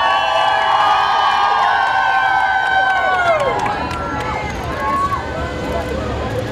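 A crowd cheering and screaming in many overlapping high, held voices, dying away about three and a half seconds in, then breaking into mixed chatter.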